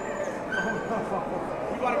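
A dog whining with short high-pitched yips, waiting at the start line, over crowd chatter.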